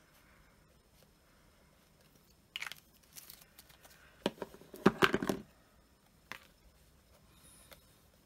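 Cardstock pieces being handled and moved on a craft mat: a short paper rustle about two and a half seconds in, then a cluster of sharp taps and rustles a little later, with one more tap after that.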